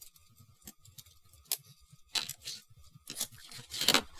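Plastic Gundam model-kit parts clicking and scraping as fingers work a hand part loose: scattered light clicks, louder in the second half, with the loudest just before the end.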